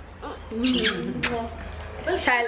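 A toddler's short wordless vocal sound, falling in pitch, about half a second in, with a couple of faint clicks.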